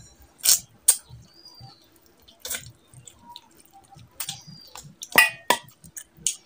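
Close-miked wet mouth sounds of eating oily mutton fat curry and rice by hand: sharp lip smacks and squelchy chewing, with smacks about half a second and a second in, another near the middle, and a quick cluster near the end.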